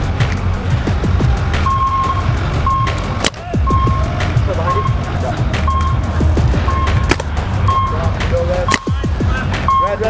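Short electronic beeps, about one a second, from a countdown timer before a paintball point starts. They sound over a steady low rumble and background crowd voices.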